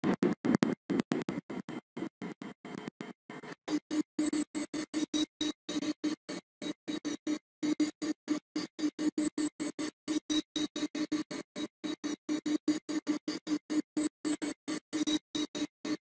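Video playback audio from the Windows 10 Photos app editor, a music-like 3D-effect sound with a steady low tone. It stutters, chopped into short fragments about four or five times a second, because the editor's preview playback is not running smoothly.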